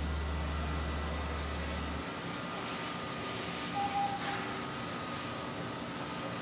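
Steady outdoor background noise, an even hiss. A low steady hum stops abruptly about two seconds in, and a brief faint tone sounds near the middle.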